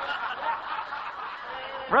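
Audience laughing together, many voices at once.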